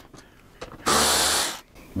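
Cordless screwdriver running in one short burst of under a second, about a second in, backing out a windshield bolt.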